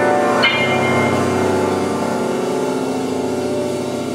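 Grand piano played in free improvisation: a dense chord is struck about half a second in and rings on, decaying slowly over sustained low notes.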